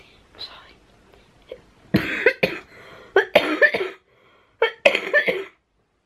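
A person coughing in two short fits, one starting about two seconds in and another near five seconds, several sharp coughs in each.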